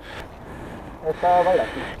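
A low, even rustling hiss, then a short vocal sound from a person a little over a second in.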